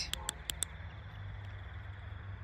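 Mateminco FW3 flashlight's forward-clicky tail-cap switch pressed a few times in quick succession, small clicks within the first second, stepping the light up from its lowest mode. A steady low hum runs underneath.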